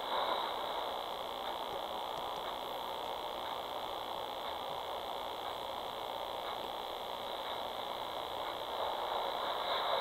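Steady hiss of static from a video baby monitor's speaker, swelling slightly near the start and near the end.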